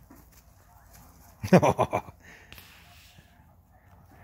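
Brief human laughter about one and a half seconds in, standing out against faint outdoor background.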